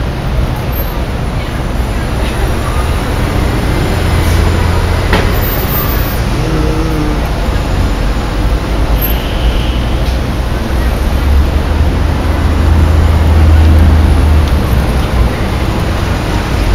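City street traffic: a steady wash of passing vehicles with a deep low rumble that swells twice, heaviest about three-quarters of the way through, as a large vehicle goes by.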